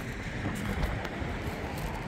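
Wind rumbling on the microphone outdoors, an uneven low buffeting over a steady background hiss.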